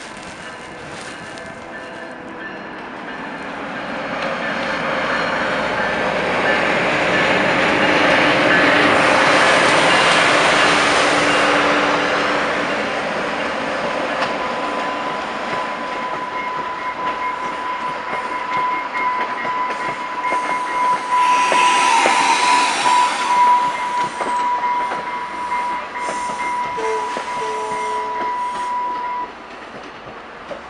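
Locomotive-hauled commuter train pulling into a station, rising to a loud pass as the locomotive goes by, then a steady high squeal of the brakes as it slows, cutting off as it stops. A loud burst of noise breaks in partway through the squeal.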